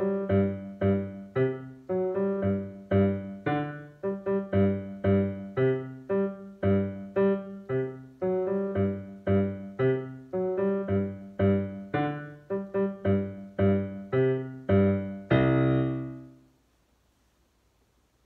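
Digital piano played with both hands: the duet accompaniment to a primer-level piece, short chords and notes in a steady beat of about two a second. It ends on a longer held chord near the end that rings and dies away.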